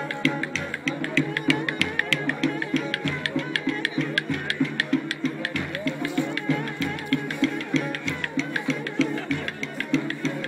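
A davul, the large double-headed drum, beats a steady dance rhythm with a stick under a wavering bowed melody on the kemane fiddle. This is Turkish village folk dance music.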